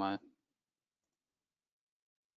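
A man's voice trailing off on one word, then near silence for the rest.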